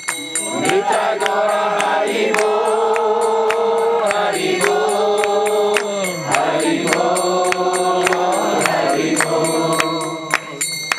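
Devotional chanting of a mantra sung in long held notes that slide between pitches, with small hand cymbals striking a steady beat of about four strokes a second.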